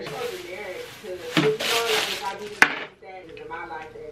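Plastic wrap crinkling and tearing as it is pulled off a new canvas, loudest about halfway through, with a sharp snap near the end of the tearing. It stops about three seconds in.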